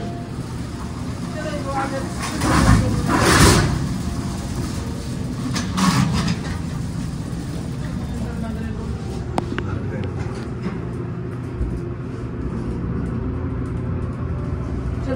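Submersible hydraulic pump motor of an MEI hydraulic elevator running with a steady hum as the car rises, with louder rushing noises about three and six seconds in.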